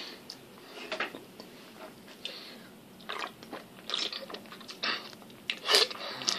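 Quiet mouth sounds of someone tasting an energy drink: scattered short lip smacks and swallowing clicks, with a louder sip from the can near the end.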